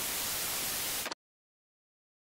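Television static sound effect: a loud burst of hiss lasting about a second that cuts off suddenly, as the set switches off.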